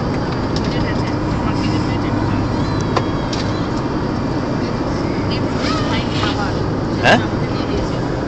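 Steady drone of an airliner cabin in flight, engine and airflow noise at an even level. A short click comes about three seconds in, and faint voices are heard over the drone near the end.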